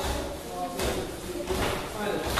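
A group of dancers' feet stamping together on a tiled floor, a sharp stamp roughly every 0.8 seconds, with voices in the background.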